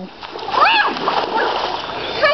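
Splashing and sliding through a shallow muddy rain puddle on grass, a rough watery wash that runs from just after the start, with a short child's cry about half a second in.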